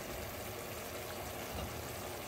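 Steady low hum and hiss from a pan of beef and vegetables simmering in sauce on a gas stove, with no stirring knocks or scrapes.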